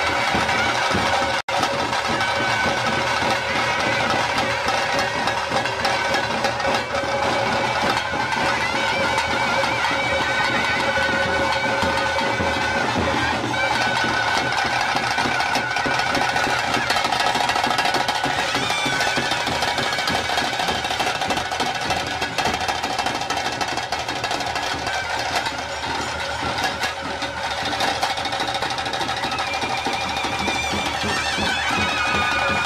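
Traditional ritual band music of a brass horn and drums: a wind melody on long held notes over continuous rapid drumming. The sound cuts out for an instant about a second and a half in.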